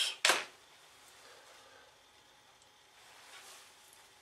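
Near-quiet room tone, broken by one short, sharp sound a quarter of a second in and a faint soft sound near the end.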